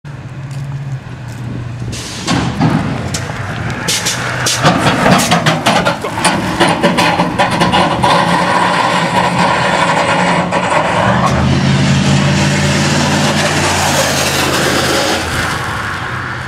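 Street-racing cars' engines running hard at high revs, with a rapid series of sharp cracks in the first half. A strong, steady engine note swells about eleven seconds in and eases near the end.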